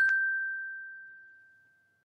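A bright bell-like ding sound effect: one clear tone, lightly struck again just after it begins, ringing on and fading away over about a second and a half.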